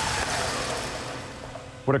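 Noisy tail of a car's frontal offset crash into a barrier, a dense crunching and scattering wash that fades away steadily over about two seconds.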